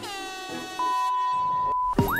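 Edited-in comedy sound effects: a horn-like tone that drops in pitch and levels off, then a steady high beep lasting about a second, which is the loudest part.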